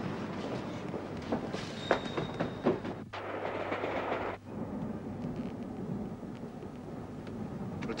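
Train running along the rails, its wheels clacking over the track in an uneven rhythm. The rushing noise turns suddenly brighter for a second or so around the middle, then settles to a softer steady rumble.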